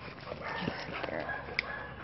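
A dog's faint, thin, high whine over quiet scuffling, with a short click about one and a half seconds in.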